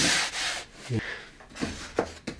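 A hand rubbing across the scored surface of an MDF panel, a dry swishing rub that is loudest at the start and then fades. Quieter handling of the wooden box follows, with a light knock near the end.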